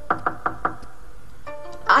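Loud knocking on a large oak door: a quick run of four knocks, over soft background music.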